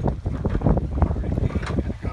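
Strong wind buffeting the microphone: a loud, uneven, gusting rumble.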